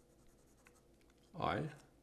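Fountain pen nib scratching faintly on paper in short strokes as a letter is written.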